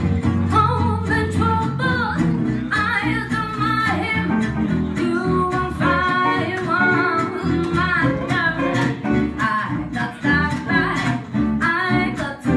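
Live gypsy jazz: a woman singing into a microphone over acoustic guitars strumming a steady beat, with a plucked double bass underneath.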